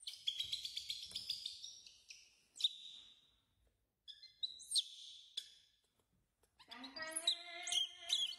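A newborn monkey's high-pitched squealing cries: a rapid run of squeals at the start, then several short chirping calls. Near the end comes a longer, lower cry.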